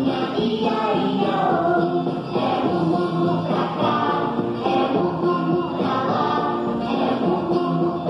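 A children's song sung by several voices over musical accompaniment.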